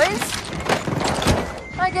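A few dull knocks and clatter over a noisy hiss, with about three strong knocks between half a second and a second and a half in.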